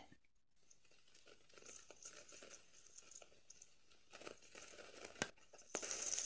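Faint rustling and crackling of leaf litter with small scattered clicks, as a mouse handles its acorn cache, on trail-camera audio. Just before the end a steady high hiss of pouring rain cuts in.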